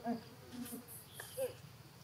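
Insects buzzing in short, high-pitched bursts, with a few brief faint low calls or voices, one sliding down in pitch at about a second in.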